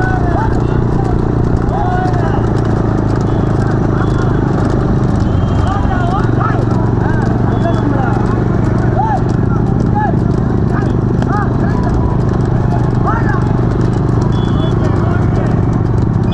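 Bullock-cart race run along a road: a steady hum of many motorcycle engines running close behind, with hooves clattering on asphalt and men's short shouts and calls throughout as the bulls are urged on.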